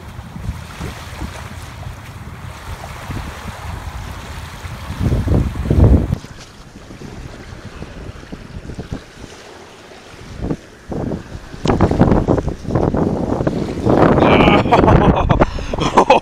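Wind buffeting the microphone of a chest-mounted camera on a beach, with a louder surge about five seconds in and the wash of small waves. From about two-thirds of the way through, a run of close rustles and knocks as a large redfish is picked up and handled.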